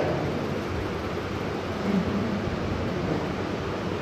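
Steady rushing room noise in a pause between speech, with a faint low voice briefly about halfway through.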